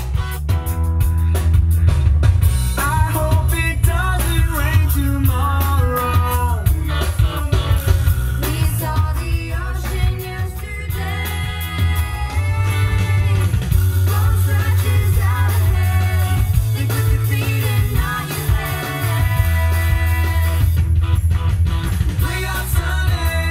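A song with singing, guitar and heavy bass played loud through the Rivian R1T's in-cabin sound system.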